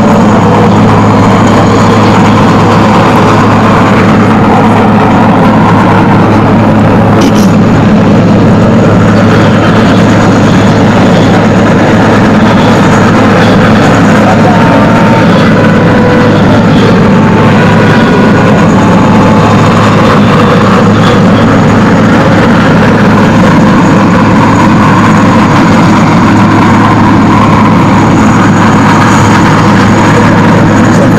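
Military transport helicopter hovering, its rotors and turbines running loud and steady with a constant low hum.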